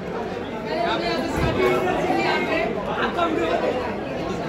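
Overlapping chatter of several people talking at once in a large, echoing room.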